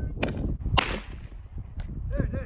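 Sharp cracks of small fireworks going off, two in quick succession about half a second apart, the second louder and trailing off briefly, and a fainter third near the end, over wind rumble on the microphone.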